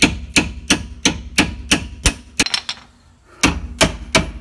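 A hammer striking the steel clip tab on a leaf spring pack, bending it closed over the added leaf. The blows are sharp metallic strikes, about three a second and ten in all, with a pause of about a second before the last two.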